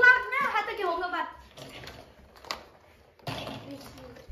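A child speaking for about a second, then soft handling sounds with one sharp click about halfway through, as plastic Easter eggs are handled over a steel bowl.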